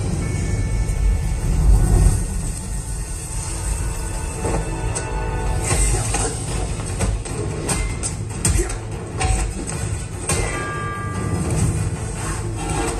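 Film soundtrack played back over home-theatre loudspeakers in the room: music with deep bass, and from about halfway through a rapid run of sharp hits and clashes from a martial-arts fight.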